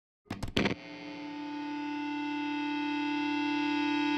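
Logo intro sound: a few quick sharp hits, then a single held note, rich in overtones, that swells steadily louder.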